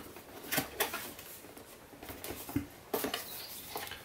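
Cardboard camera box being opened by hand: a series of short scrapes and taps as the lid and flaps are lifted and folded back.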